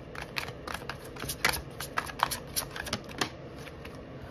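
A tarot deck being shuffled by hand: a quick, irregular run of soft card clicks and flicks, with a card drawn and laid down near the end.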